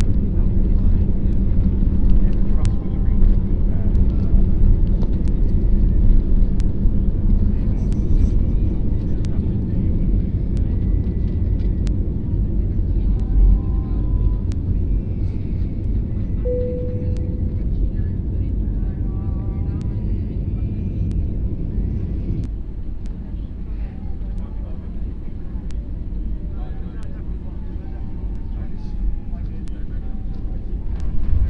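Jet airliner cabin noise during the takeoff roll and climb-out: the engines at takeoff power give a loud, steady, deep roar with a hum in it, which eases somewhat about 22 seconds in. Faint voices sound in the cabin.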